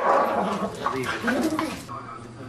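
A dog growling and vocalising aggressively while guarding its food bowl, a food-aggression reaction to a hand near its kibble, with a woman's laughter and a few words over it. The sound changes abruptly at the very end.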